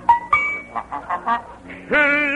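A quick run of about eight short, pitched honks, a comic goose-call or horn sound effect played over novelty dance-band music. Right at the end a note sweeps up into a held, wavering tone.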